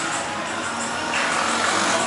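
Busy street at night: music playing from roadside bars over general traffic noise, with a motorbike passing about a second in.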